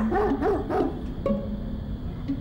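A dog barking: three quick barks in the first second, with a few short pitched sounds after.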